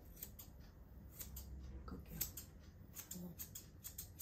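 Grooming scissors snipping a small dog's muzzle hair in quick, irregular soft snips.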